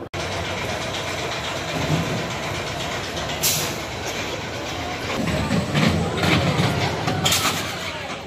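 Spinning-mouse roller coaster car running along its steel track with a steady rattling rumble that grows louder about five seconds in as the car comes overhead.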